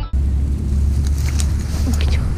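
Intro music cuts off just at the start, giving way to wind buffeting the microphone: a steady low rumble with a few faint clicks and rustles.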